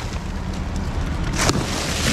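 Low rumbling wind buffeting the microphone, with rustling of plastic rubbish and one sharp crackle about one and a half seconds in.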